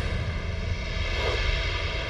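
Soundtrack drone: a steady low rumble layered with sustained tones, with no distinct events.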